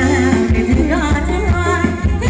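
Live Thai ramwong band music: a singer's voice over steady bass and a drum beat.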